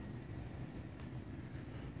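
Quiet room tone: a low, steady background hum with one faint click about a second in.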